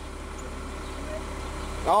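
A car engine idling steadily: a low, even hum with a faint steady drone.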